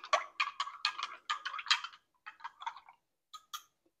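A utensil stirring a sour-cream gravy mixture in a container, rapid light clicks against its side that thin out after about two seconds, ending in two last taps.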